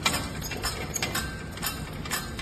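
Hand-cranked trailer jack being wound up to retract its leg, the crank and gears giving a string of irregular metallic clicks, the sharpest right at the start.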